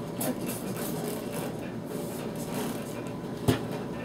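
Small handling sounds of paint supplies being worked at a table over a steady background hiss, with one sharp knock about three and a half seconds in.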